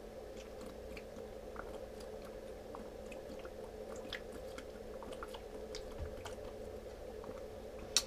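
A person drinking water from a bottle in long gulps: faint, irregular swallowing clicks over a steady low room hum.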